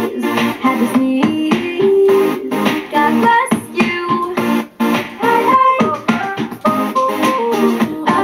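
A pop song playing, with keyboard and guitar backing and a steady beat, and voices singing along to it.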